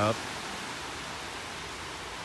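Steady, even hiss of outdoor beach ambience on a phone microphone after the last word of speech at the very start.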